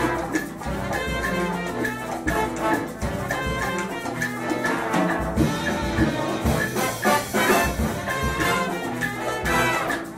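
An Afro-Cuban jazz big band playing, with the brass section carrying the melody over Latin percussion.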